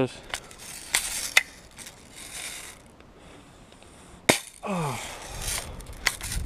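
Rifle action clicking and rattling as the gun is worked, then one sharp shot about four seconds in.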